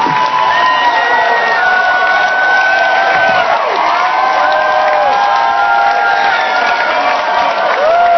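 Concert crowd cheering loudly, many voices holding long overlapping shouted notes over a wash of clapping and crowd noise.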